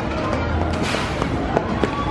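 Steel family roller coaster train rattling along its track as it passes, with a few sharp clacks from the running gear.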